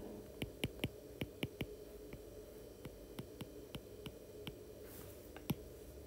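Faint, irregular light clicks of a stylus tip tapping on a tablet's glass screen while words are handwritten, two or three a second, the sharpest about five and a half seconds in, over a low steady hum.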